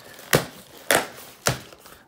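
Cardboard shipping box being opened: three sharp slicing, ripping sounds about half a second apart as a pocket knife cuts the packing tape and the flaps come free.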